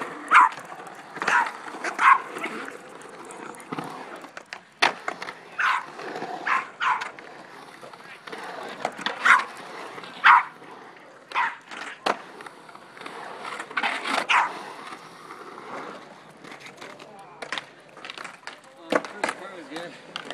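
A small dog barking again and again in short sharp barks, sometimes two in quick succession, over the rolling rumble and clacks of skateboard wheels on a concrete bowl.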